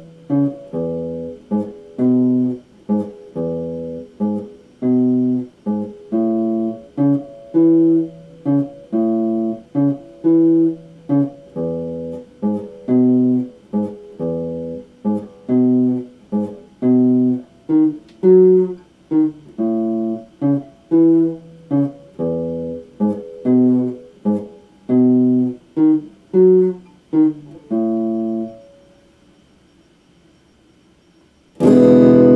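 Electric guitar playing short, clipped chords in a steady rhythm of about two a second, each chord stopped abruptly, with a small set of chord shapes repeating. The playing stops near the end.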